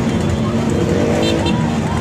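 Motorcycle and car engines running at a crawl in a dense convoy, a steady drone under loud voices calling out from the crowd. Two short high beeps come a little past halfway.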